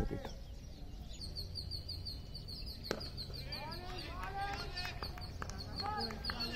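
A bird chirping, a short high call repeated rapidly and evenly from about a second in, over faint distant voices on the field. A single sharp click comes about three seconds in.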